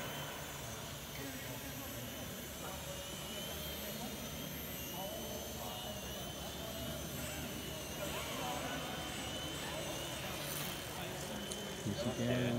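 Small electric RC model plane motor and propeller whining in flight, its pitch wavering up and down with the throttle, over the echo and hum of a large hall.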